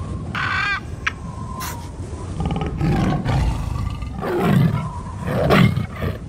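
Logo sound effects of animal calls: a short shrill call about half a second in, then a tiger roaring several times, with the two loudest roars in the last two seconds.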